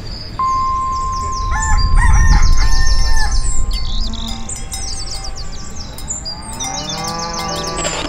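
Birds chirping in a dawn chorus, with a steady high tone early on and a low rumble swelling about two to three seconds in. Near the end a rooster crows.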